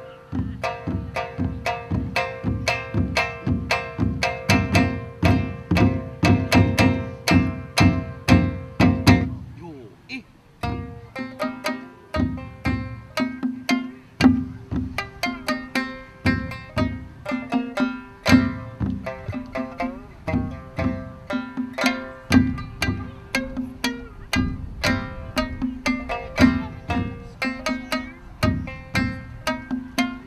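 Shamisen played solo, plucked with a bachi plectrum in quick runs of notes, with a short pause about ten seconds in before the playing picks up again.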